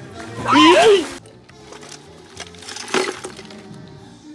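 Glass bottles and ice rattling in a metal bucket as a bottle is pulled out, with a sharp clink about three seconds in. A loud, high-pitched shout rises and falls about half a second in, over background music.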